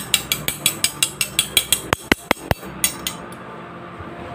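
Metal eating utensils clinked and tapped against each other in quick succession, about six light metallic clicks a second. A few sharper snaps come around two seconds in, and a short last run of clinks follows about a second later.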